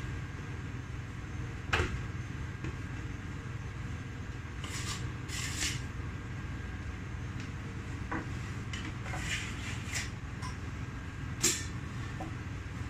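A steel chocolate scraper knocking and scraping against an upturned polycarbonate bonbon mould as excess white chocolate is cleared from it while shelling: a few sharp knocks, the loudest near the end, and a couple of short scrapes, over a steady low hum.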